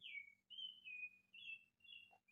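Faint chirping of a small bird: a run of short, high chirps, two or three a second.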